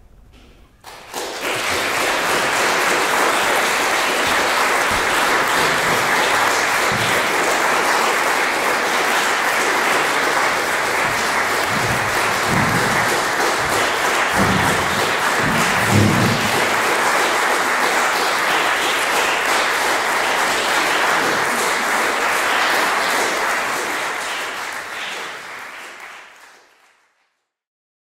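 Concert hall audience applauding. The clapping starts about a second in, holds steady, and fades out near the end.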